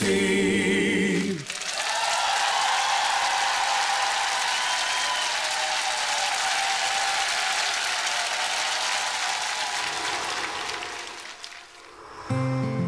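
A man's held, wavering sung note ends about a second and a half in, and a studio audience then applauds, the applause fading away near the end.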